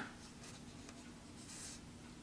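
Faint rustling with a few light ticks, over a faint steady hum.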